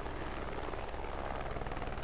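Helicopter heard from inside its cabin: the rotor and engine running steadily with a fast, even chop.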